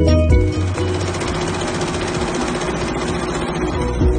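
Multi-head industrial embroidery machine stitching: a dense, fast mechanical rattle of the needle heads, heard once the backing music drops out about half a second in.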